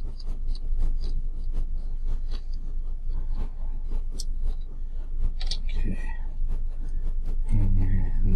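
Small clicks, taps and scrapes of hands pulling parts off a 3D printer's extruder carriage, over a steady low hum.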